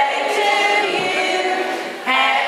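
A group of people singing together, many voices at once.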